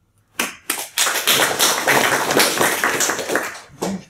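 Audience applauding: a couple of separate claps, then dense clapping that thins out near the end.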